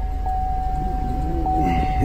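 A 2003 Chevy Tahoe's 5.3-litre Vortec V8 idling at about 1,000 rpm just after being started, heard from the driver's seat, with a steady high-pitched whine over the low engine rumble.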